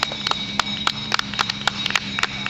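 Sharp slaps in a steady rhythm, about four a second, over a faint steady hum.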